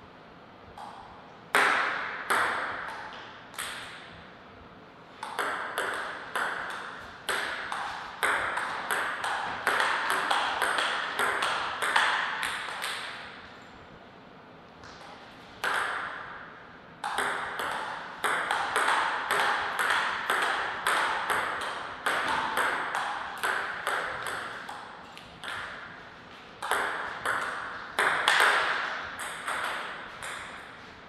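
Table tennis rallies: the celluloid ball clicking off the paddles and bouncing on the table in quick runs of sharp ticks with a short echo, several points in a row with pauses of a second or more between them.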